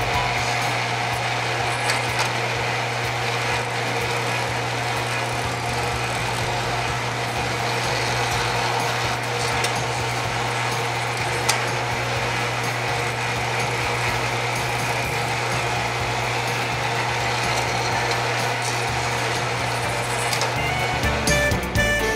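Lionel operating sawmill accessory running: its vibrator mechanism buzzes steadily with a low electrical hum and rattle as it works a log through into a finished board, cutting off shortly before the end.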